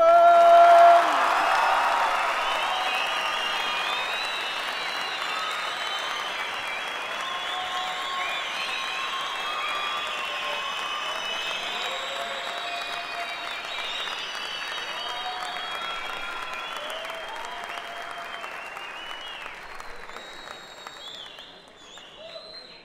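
Theatre audience applauding at length, with voices calling out over the clapping. It is loudest at the start and dies away gradually toward the end.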